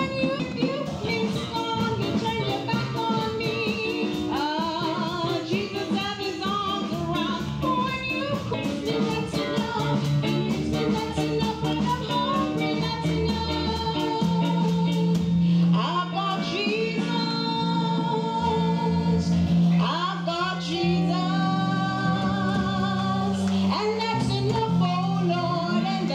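A woman singing a song into a microphone over instrumental accompaniment with steady bass notes and a regular beat.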